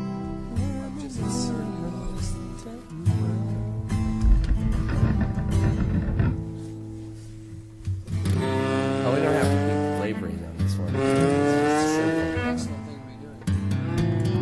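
Acoustic guitars playing through a song's chord changes in a rehearsal, with a voice joining in from about eight seconds in.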